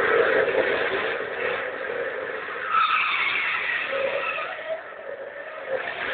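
Car engines running hard and tyres squealing as cars speed and corner in a chase, loudest at the start with a stronger squeal about midway.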